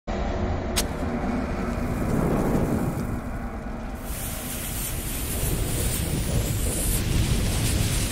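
Logo-intro sound effects: a low, continuous rumble with a sharp crack just under a second in. About four seconds in a hissing rush like flames joins it, building toward an explosion.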